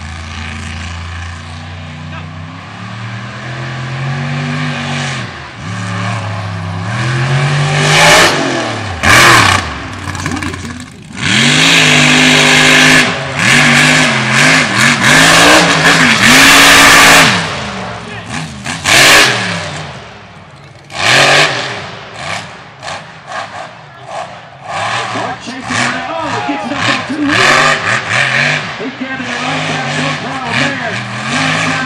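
Mega mud truck engine revving hard and easing off again and again as the truck races a dirt course, its pitch climbing and falling with each throttle stab. The engine is loudest at full throttle around the middle, with one more brief loud blast shortly after.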